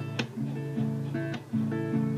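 Acoustic guitar capoed at the second fret, strummed in a down-up pattern with sharp muted "block" strokes about a second apart. The chord changes about twice.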